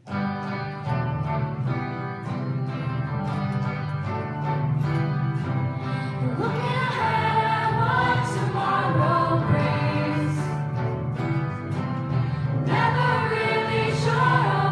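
Junior high school choir singing an original song with a live band that includes an electric bass; the music starts suddenly, and the voices grow fuller about six seconds in.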